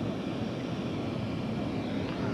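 Steady engine noise from aircraft and police motorcycles: an even rumble with no clear pitch and no change.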